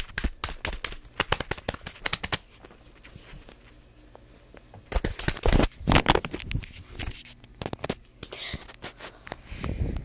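Handling noise from a phone's microphone as it and the plush toys are moved about: scattered clicks and knocks, a quieter spell, then a louder rustling stretch about halfway through, and more clicks after it.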